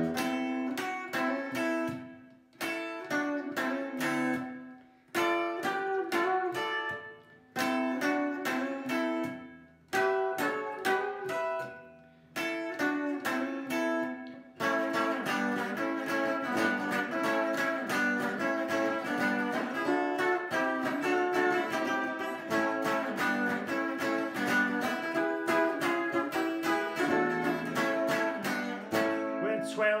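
Epiphone semi-hollow electric guitar playing a rock and roll solo. For the first half it plays short phrases broken by brief silences about every two and a half seconds, then a continuous run of quick picked notes to the end.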